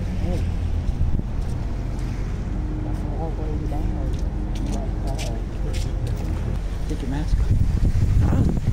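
Wind buffeting the microphone, a steady low rumble, with a few light clicks in the middle.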